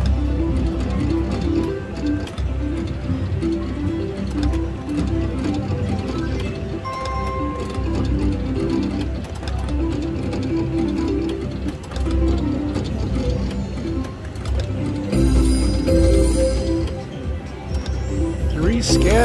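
The 'Catch the Big One 2' video slot machine plays its reel-spin music, a short repeating electronic melody, over several losing spins in a row. A brief beep sounds about seven seconds in.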